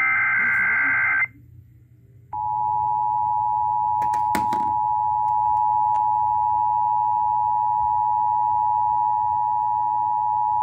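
The last Emergency Alert System data burst, a short warbling digital screech from the clock radio's speaker, ends about a second in. After a second's pause, the steady two-tone EAS attention signal sounds for about eight seconds, the signal that an emergency warning is about to be read.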